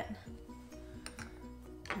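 Quiet background music of held, slowly changing notes, with a couple of faint clicks from a silicone spatula scraping pudding out of a food processor bowl.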